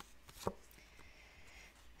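Faint handling of oracle cards: a few soft taps and clicks, the clearest about half a second in.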